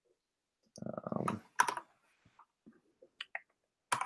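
Computer keyboard keystrokes and clicks, coming and going in short scattered bursts: a quick cluster about a second in, a few sharp clicks later, and one more sharp click near the end.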